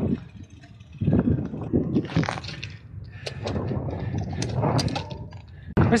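Wind rumbling on a handlebar camera's microphone and a gravel bike rolling over a cracked, rough asphalt path, with scattered short clicks and rattles from the bike.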